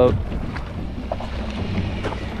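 Wind on the microphone aboard a boat at sea: a steady low rumble with no distinct events.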